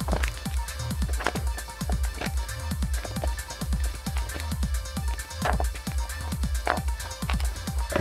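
Background electronic music with a steady pulsing bass beat.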